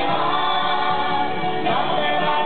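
A group of voices singing together in harmony, holding long notes, with the chord moving to new pitches about a second and a half in.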